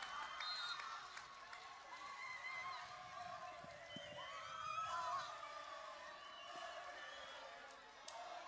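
Faint, distant cheering and high-pitched shouts and screams from a crowd and players celebrating a win.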